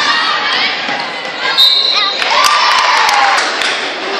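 Basketball dribbled on a hardwood gym floor amid crowd voices and shouts in a large echoing gym. A short high-pitched tone sounds about halfway through, followed by one long drawn-out shout.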